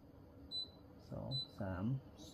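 Two short, high electronic beeps from an air purifier's control panel as its timer button is pressed, each press stepping the timer up by an hour.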